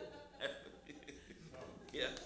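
A person's voice in a few short, indistinct utterances with pauses between them.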